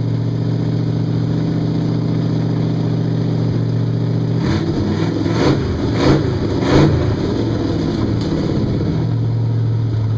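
Hot rod's engine idling steadily, then revved in a series of quick blips at the throttle from about halfway through, before settling back to an even idle near the end.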